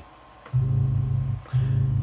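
A sample played back through an Akai S2000 sampler, sounding twice as a low, pitched-down tone: the first note about half a second in, the second about a second later, ringing on. It plays at a way too low pitch because the key group tracks the keyboard, so a sample recorded at C3 is transposed down to C sharp 1 and comes out pitched down and slow.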